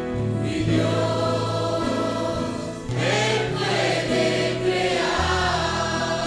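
Children's and teenagers' choir singing a hymn together, over instrumental accompaniment with sustained low notes that change chord every second or two.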